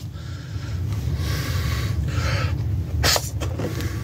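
A man's breathing and the rubbing of a latex balloon being handled, over a steady low rumble, with one short sharp snap about three seconds in.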